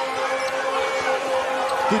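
Arena crowd noise during live basketball play, with a ball dribbling on the hardwood court and a steady held tone running through the crowd.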